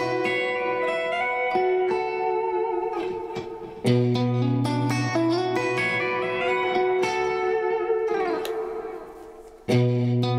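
Electric guitar playing a fingered, chord-like phrase with its notes left ringing together. The phrase starts again about four seconds in, slides down and fades, then starts once more near the end.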